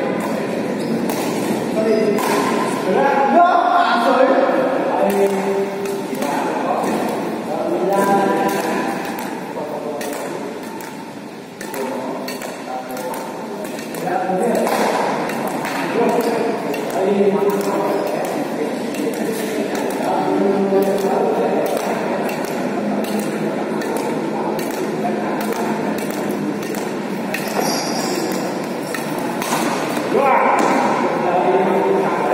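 Badminton rackets hitting the shuttlecock in a doubles rally, a series of short pings, with voices talking throughout.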